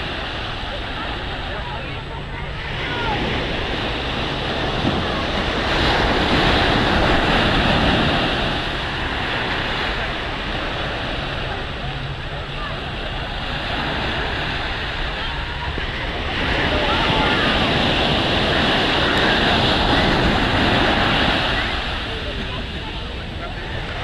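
Small sea waves breaking and washing up a sandy shore, swelling louder twice, a few seconds in and again in the second half, with wind buffeting the microphone.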